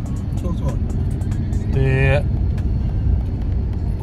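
Steady low rumble of road and engine noise inside a moving car's cabin, with a brief voiced sound about two seconds in.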